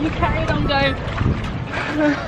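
A woman laughing and giving short vocal sounds over a steady rush of wind on the microphone.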